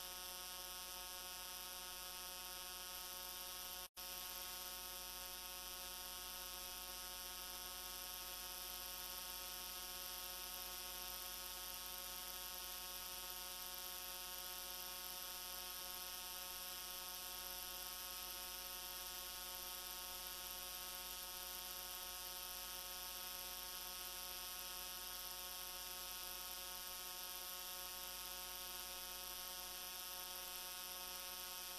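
Steady electrical hum with a constant hiss, unchanging, with no other sound; the signal drops out for an instant about four seconds in.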